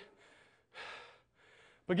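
A man's single quick intake of breath, about half a second long, in the middle of a short pause; speech starts again at the very end.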